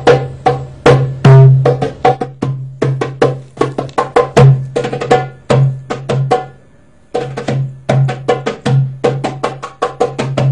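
Hand drum played solo in a fast dance rhythm, mixing deep low strokes with sharp, dry high strokes. The drumming breaks off briefly about seven seconds in, then picks up again.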